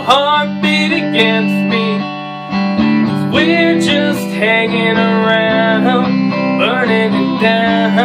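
Fender Telecaster electric guitar strummed in a steady rhythm, with a man singing a country song over it. The playing eases briefly about two seconds in, then picks back up.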